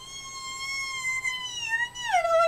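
A woman's long, high-pitched squeal of delight, held steady and sliding down a little near the end.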